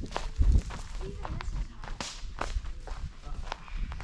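Footsteps on a dry forest floor of pine needles and twigs, irregular as someone walks with the camera, with one heavier thud about half a second in.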